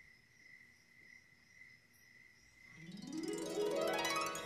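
A faint, steady, high chirring chorus of recorded night-time nature sound. About three seconds in, music swells in with a rising sweep of notes and becomes the loudest part.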